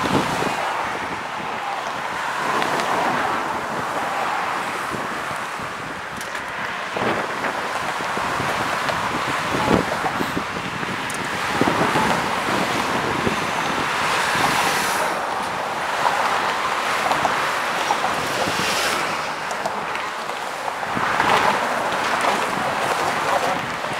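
Steady road traffic passing close by, cars and trucks whose tyre and engine noise swells and fades as each goes past, mixed with wind on the microphone.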